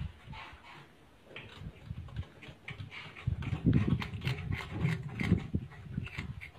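Hoary bamboo rat gnawing on a piece of bamboo: short rasping bites, about three a second, through the second half, over uneven low thumps.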